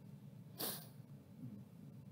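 A short, sharp intake of breath, about half a second in, against quiet room tone.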